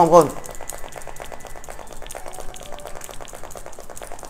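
Rapid, fairly even light clicking and rattling as two smartphones are handled and knocked together in the hands, after a man's voice stops just after the start.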